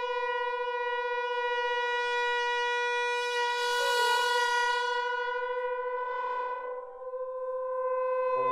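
Contemporary chamber ensemble sustaining one long, steady note near 500 Hz. A brighter, louder swell enters about three and a half seconds in, a smaller one follows near six seconds, and the sound thins briefly just before the end.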